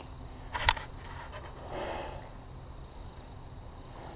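Quiet outdoor background with one short, sharp click a little under a second in and a brief soft rustle around two seconds in.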